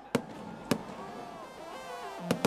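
Fireworks going off. There are two sharp bangs about half a second apart, over a continuous background din.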